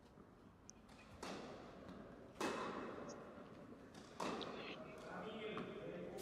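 A short tennis rally: three racket strikes on the ball, about a second or two apart, each echoing in a large indoor tennis hall.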